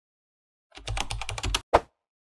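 A rapid burst of typing clicks lasting under a second, ending with one sharp, louder keystroke.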